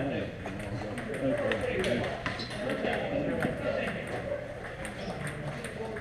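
Table tennis balls clicking off paddles and tables at irregular intervals, several rallies overlapping, over men talking.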